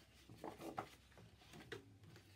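Near silence: quiet room tone with a few faint rustles of paper and card being handled, about half a second in and again near the end.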